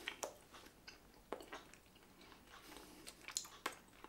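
Faint chewing of a fruit gummy with the mouth closed: scattered wet mouth clicks and smacks, a few of them louder.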